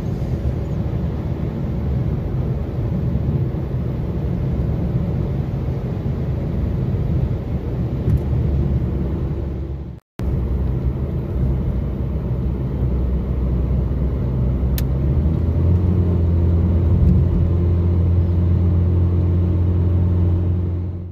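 Road and engine noise inside a Ford Fiesta's cabin while driving: a steady low rumble that cuts out for a moment about halfway, then turns into a deeper, louder drone about three-quarters of the way in.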